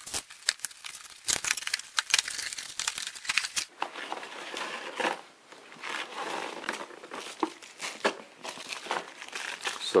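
Cardboard box packaging being opened and handled: crinkling and rustling of cardboard flaps, a cardboard tray insert and plastic wrapping, with scattered sharp clicks and taps throughout.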